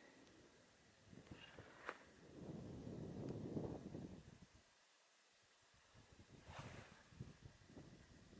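Near silence: quiet outdoor air with a few faint soft rustles, a small click about two seconds in, and a brief low rush of noise around the middle.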